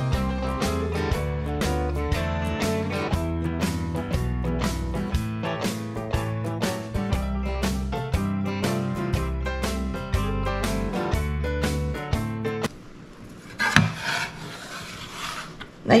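Instrumental background music with a steady beat, stopping abruptly a few seconds before the end. After it stops, there is soft rubbing with one short knock as hands knead a dough on a wooden countertop.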